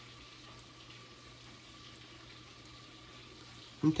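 Quiet kitchen room tone: a faint steady hiss with a low, even hum underneath.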